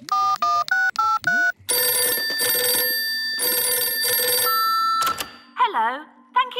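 Mobile phone keypad beeping as five numbers are dialled, each press a short two-note tone. Then a telephone rings for about three seconds, followed by a single short beep and a click.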